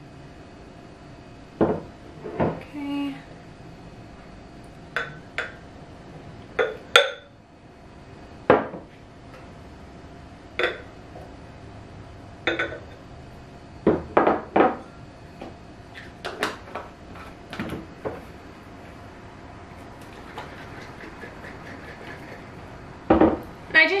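Scattered light clinks and knocks of glassware: a glass measuring cup tapping against glass juice bottles as juice is poured into them and the bottles are handled.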